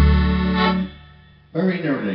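Piano accordion holding its final chord over a deep bass note, which fades out within the first second to end the tune. A man starts talking about a second and a half in.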